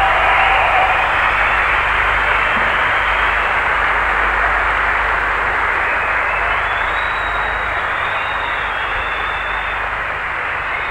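Concert audience applauding, a dense steady clapping that slowly fades, with a low hum underneath.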